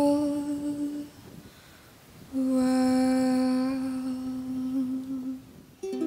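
A woman humming long held notes as part of a slow song: one note fading out about a second in, then after a short pause a second long note, with plucked ukulele notes coming in near the end.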